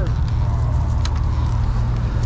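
A steady low rumble like an idling motorcycle engine, with a single sharp click about a second in.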